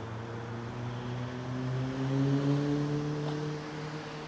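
A vehicle engine running close by: a steady low drone that swells a little in the middle and edges up in pitch, over a hiss of wind and street noise.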